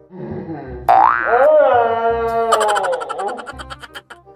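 Cartoon-style comedy sound effect edited over the video: a pitched tone slides up and holds steady, then turns into a fast springy rattle about two and a half seconds in.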